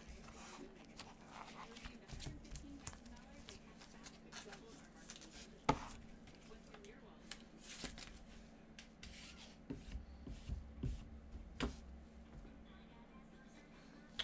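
Trading cards and their plastic packaging handled with gloved hands: faint scattered clicks and rustles, one sharper click about six seconds in, over a steady low hum.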